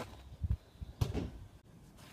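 A football kicked off grass close to the microphone: a pair of low thumps about half a second in, then a sharper thud of the kick about a second in.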